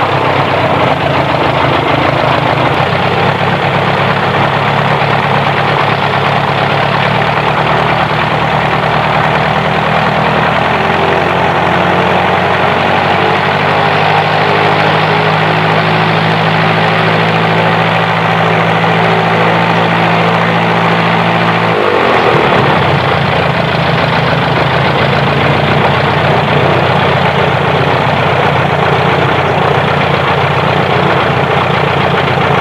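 Continental A65 four-cylinder air-cooled aircraft engine running on a ground test, firing on the left magneto only. Its revs rise in steps partway through, then fall suddenly about two-thirds of the way in and settle at a lower, steady speed.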